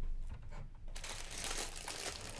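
Plastic bag of LEGO pieces crinkling as it is handled, starting about halfway through, with a few light knocks of plastic pieces against the table.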